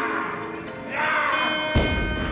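Background music with steady sustained tones; near the end, a single heavy thud as a loaded barbell with bumper plates is dropped from overhead onto the lifting platform.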